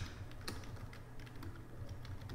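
Typing on a computer keyboard: irregular keystroke clicks, one louder about half a second in, over a faint low hum.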